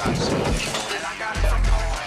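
Loud film music with a shattering crash near the start, a fight-scene sound effect of something breaking.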